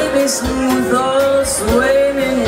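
A woman singing live through a handheld microphone over instrumental accompaniment, holding long notes that slide between pitches.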